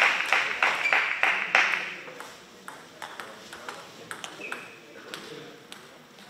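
Clapping and voices in a large hall for about the first two seconds, then quieter with scattered light clicks of a table tennis ball and one short high ping.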